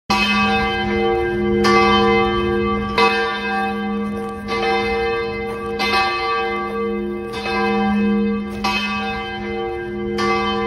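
A low bell tolling, struck about every second and a half, each stroke ringing on into the next.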